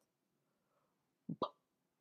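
Near silence, then a woman voicing the phonics sound of the letter B: two short 'buh' sounds in quick succession about a second and a quarter in.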